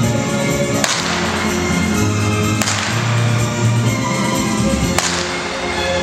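A whip cracking three times, sharp and loud, about a second in, near the middle and about five seconds in, over orchestral show music.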